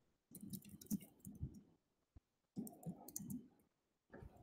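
Faint computer mouse clicking and scroll-wheel ticking, in two short runs, as a web page is scrolled down.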